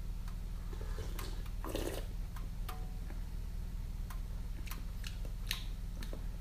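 A person sipping tea from a small cup: a short slurp a little under two seconds in, another brief sip or breath near the end, and a few faint clicks, over a steady low hum.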